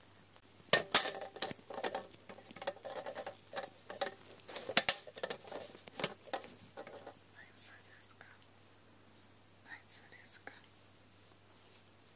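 Rubber gloves being handled and rubbed close to the microphone: a dense run of crackles, clicks and squeaks for about six seconds, then only a few faint rustles.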